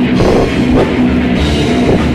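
Old-school death metal band playing live: loud, dense drum kit and distorted guitars.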